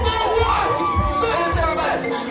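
Concert crowd cheering and shouting over loud music with a steady bass beat.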